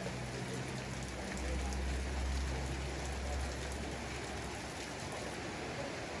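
Steady rain falling and hitting the roofs and ground, with a low rumble joining in from about one to four seconds in.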